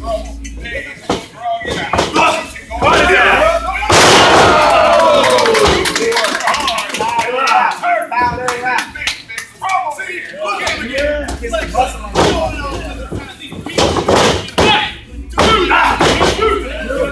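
Wrestlers' bodies hitting the wrestling ring's canvas: sharp knocks and slams several times, the loudest about four seconds in and a few more near the end. People's voices shout around the impacts.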